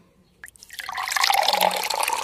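Water poured from a stainless steel kettle into a ceramic mug, the pour starting about a second in after a small click and running on steadily.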